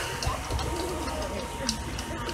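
Outdoor ambience with distant voices and a cooing bird, over a steady high-pitched tone.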